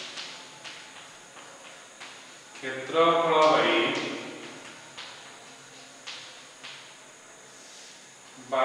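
Chalk tapping and scratching on a blackboard as a formula is written, in short strokes. A man's voice speaks briefly in the middle.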